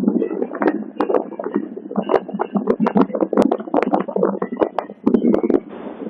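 Rustling and clicking on a handheld phone's microphone while the person filming walks: dense sharp clicks over a muffled, rumbling noise, with no pause.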